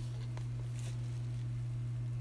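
Steady low hum in the room, with a few faint rustles and ticks from a softcover book being handled near the start.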